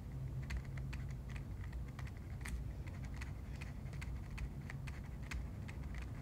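A stylus tapping and scratching on a tablet screen during handwriting: a string of irregular small clicks, a few a second, over a low steady hum.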